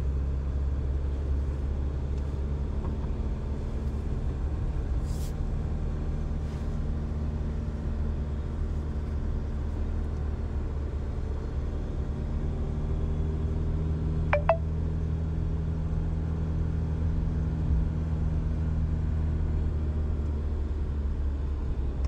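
Car engine hum and road rumble heard from inside the cabin as the car drives steadily along a hill road. A single short falling squeak sounds about fourteen seconds in.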